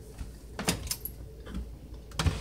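A few light clicks and knocks from a wooden dresser drawer and its metal pull being handled, two close together near the middle and a fainter one later.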